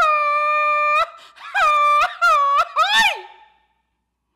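A woman's grito, the Mexican yell that opens a ranchera: one long, high held cry for about a second, then a run of short rising-and-falling whoops, ending in a higher swooping yelp about three seconds in.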